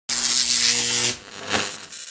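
Logo-reveal intro sound effect: a loud buzzing hiss with a low hum under it for about a second, then a swooshing hit about halfway through that rings away.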